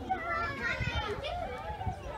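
Young children's high voices talking and calling out, over a low rumble.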